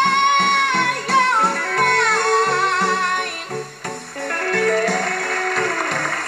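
A young female singer holds a long high note over a guitar-led pop backing with a steady pulsing beat; the note slides down and drops away about a second and a half in, and the backing carries on. A hissing noise joins behind the music in the second half.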